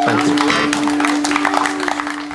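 Live folk band playing, acoustic guitar strumming over a long held note, the music fading a little near the end.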